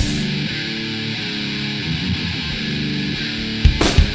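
Nu metal/rapcore song: the full band drops out, leaving a guitar playing sustained chords on its own. Near the end, drum hits bring the heavy band back in.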